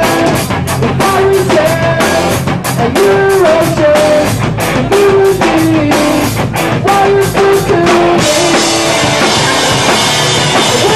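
Live rock band playing a song at full volume, with drum kit, electric guitars and a gliding melody line. About eight seconds in the sound thickens into a bright, steady wash.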